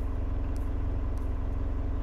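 A steady low mechanical hum that holds an even level throughout.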